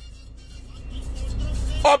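Low rumble of a road vehicle, growing louder over about a second, heard from inside a car.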